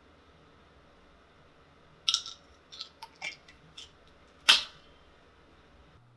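Handling of a small plastic pill bottle: a quick run of light clicks and rattles, then one sharper, louder click about four and a half seconds in.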